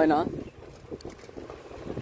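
Wind rumbling on the microphone and low road rumble while riding a bicycle, steady after a brief spoken word at the start.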